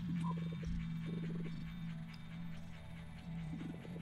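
Background horror music holds a steady low drone, and a low rasping creak sounds twice within the first second and a half.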